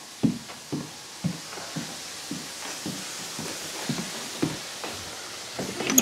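Footsteps of a person walking across a hardwood floor, a steady pace of about two steps a second.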